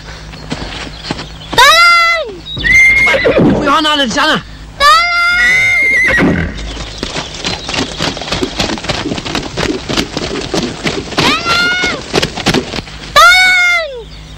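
Horses neighing loudly several times, with rapid hoofbeats of horses on the move through the second half.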